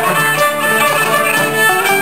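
Live ceilidh band playing a jig for dancing: two fiddles carrying the tune over banjo and acoustic guitar.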